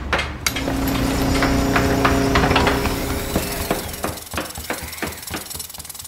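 A run of irregular, hammer-like knocks over a steady hum, getting quieter through the second half.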